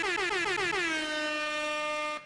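Air horn sound effect: a run of quick blasts, about six a second, running into one long held blast.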